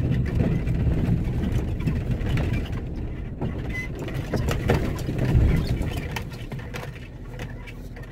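Vehicle cabin noise while driving slowly on a rough dirt track: a low engine and tyre rumble with scattered bumps and rattles, growing quieter over the last couple of seconds.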